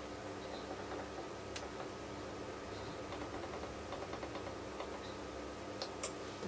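Low steady electrical hum from bench equipment, with a few faint ticks and a sharper click about one and a half seconds in and another near the end.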